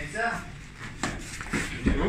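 A brief vocal sound, then scuffling on foam training mats, and a heavy thud near the end as a person is shoved down onto the mats.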